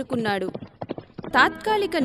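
Horse hooves clip-clopping: a short run of quick hoof beats, about a second long.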